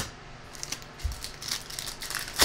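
Trading-card pack wrapper crinkling and rustling in the hands, in a scatter of short crackles and soft clicks.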